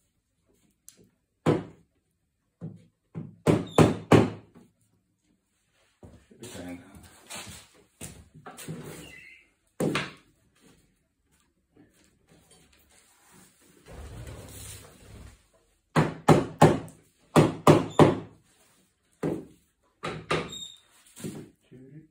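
Sharp knocks on a wooden chair frame as the back rail of an oak chair is tapped and pressed down onto its freshly glued spindles, in short clusters, the loudest a quick run of about five knocks late on, with softer rubbing and handling between. The rail is not seating fully: the glue is starting to dry.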